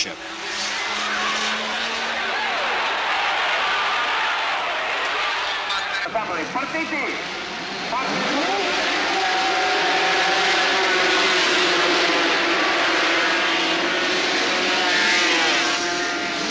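Two-stroke 500cc Grand Prix racing motorcycles: bikes passing at speed with rising and falling engine pitch, then a grid of bikes being push-started and revving together at the race start. A short laugh is heard about halfway through.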